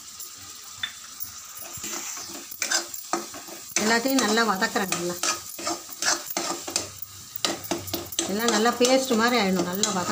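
A metal spatula stirring and scraping thick onion-tomato masala around a steel kadai, with the masala sizzling as it fries. A loud wavering pitched sound rises over the stirring twice, about four seconds in and near the end.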